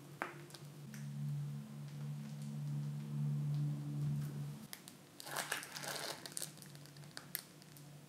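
Faint crinkling of a disposable plastic piping bag squeezed by hand as meringue is piped onto baking paper, strongest a little past halfway, with a low steady hum through the first half.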